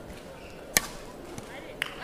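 Two sharp racket strikes on a badminton shuttlecock, about a second apart, the first the louder, over the murmur of a large sports hall.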